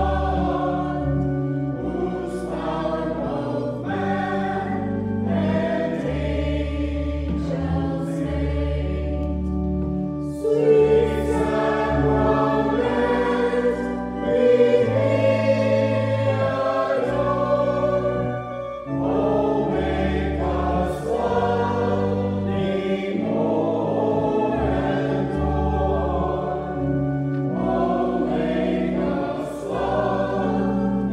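Voices singing a slow hymn together over sustained low notes, steady throughout.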